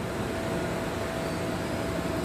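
Steady background hum, with a faint high steady tone running through it.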